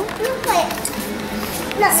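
Background voices, children's among them, with some music.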